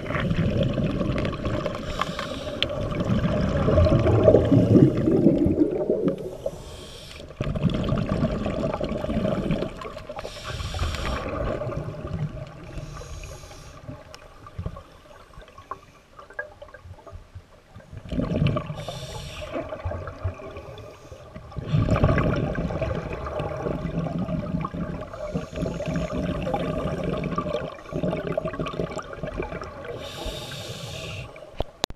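Scuba regulator breathing heard underwater: loud gurgling rushes of exhaled bubbles lasting a few seconds, alternating with short hissing inhalations, repeating every few seconds.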